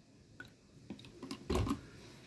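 Handling noise from a plastic water bottle: a few light clicks and crackles, then a louder thump about one and a half seconds in as the bottle is set down on the bench.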